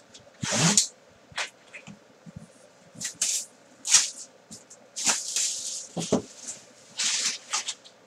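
Clear plastic shrink wrap being torn and crinkled off a cardboard box in a series of irregular rustling bursts, with a dull knock about six seconds in.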